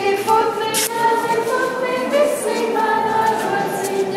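A group of voices singing a Latvian folk song together without instruments, holding each note in a slow, even line as a ring-dance song.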